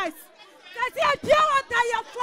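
A woman speaking into a microphone with a pause near the start.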